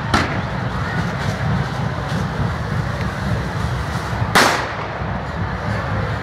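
Correfoc pyrotechnics: the steady hiss of spark fountains, broken by two firecracker bangs, one just after the start and a louder one about four and a half seconds in.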